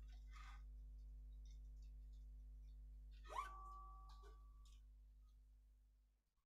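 Near silence on a video call: a faint steady electrical hum, with one short pitched tone about three seconds in, and the line fading out near the end.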